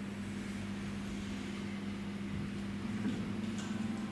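A steady low mechanical hum with one constant tone, over faint room hiss.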